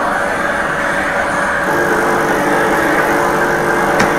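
Duplex jet steam cleaner running: a steady rushing machine noise, with a low hum of several tones joining about a second and a half in.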